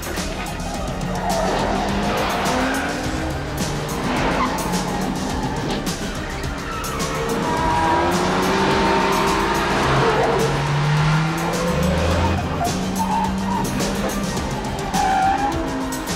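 Several cars in a chase: engines revving hard and tyres squealing, with film score music running underneath.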